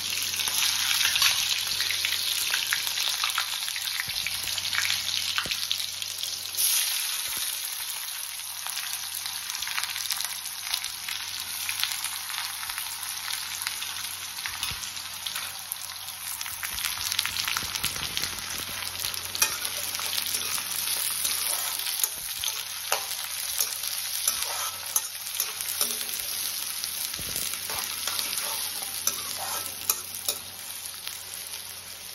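Hot oil sizzling and crackling in a black iron kadai, frying mustard seeds, green chillies and then sliced onions. The hiss eases after about six and a half seconds. Through the second half a steel spatula stirs, with sharp clicks against the pan.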